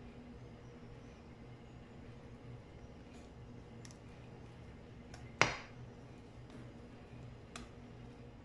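Faint scraping and soft clicks of a spatula working thick cake batter out of a bowl into a tube pan, with one sharper knock about five and a half seconds in, over a low steady hum.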